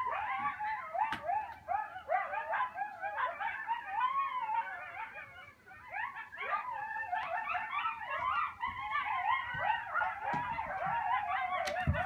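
A pack of coyotes howling together, many wavering high voices overlapping in a chorus that thins briefly about five seconds in, then picks up again.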